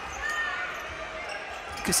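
A basketball being dribbled on a hardwood court over a steady background hum of the arena.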